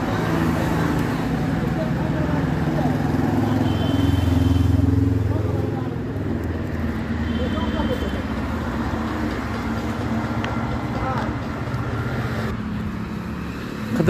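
Road traffic with a motor vehicle's engine running nearby, growing louder and peaking about four to five seconds in before easing off, with faint voices in the background.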